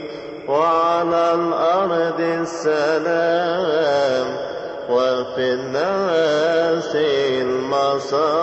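Coptic liturgical chant sung by men's voices: long, ornamented melismatic notes that waver in pitch, with short breaks between phrases.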